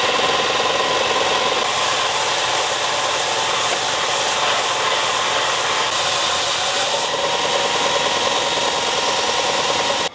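Bench belt sander running while a purpleheart wood handle blank is held against the belt and ground down: a steady sanding rush over the motor's whine, which steps up slightly about seven seconds in.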